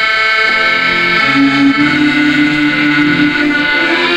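Two accordions playing a tune in long sustained chords over an upright double bass; the chord changes about a second in.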